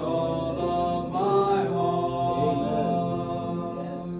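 Three boys' voices singing a song together in harmony, holding long sustained notes.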